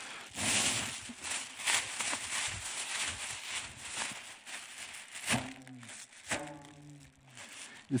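Thin plastic windtube balloon crinkling and rustling as air is blown into it and it fills, for about five seconds. Then two short voice sounds.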